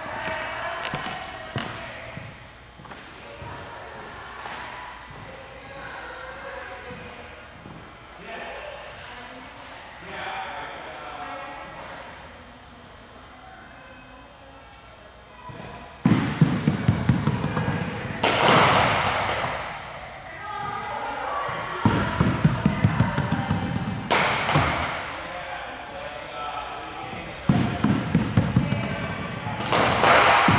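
Dimpled softballs rolled along the floor with thuds and a rumble, each roll followed by a sharper clatter as the balls strike plastic-cup bowling pins. This happens about three times in the second half, after a quieter first half.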